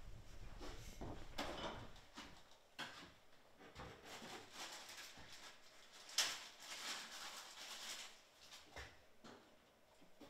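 Faint sounds of a person moving about out of sight in the house: scattered knocks and rustling, with a sharp click about six seconds in, like a cupboard, drawer or door being handled.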